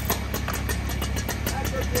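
Husqvarna 3120XP chainsaw's large two-stroke engine idling, a steady low hum with a rapid, even ticking of about eight a second.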